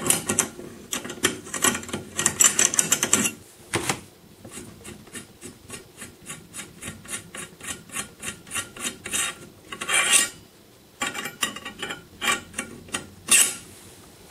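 Screw-in choke tube being unscrewed from a shotgun barrel with a choke wrench: metal scraping and clicking as the threads turn. In the middle there is an even run of ticks, about four a second.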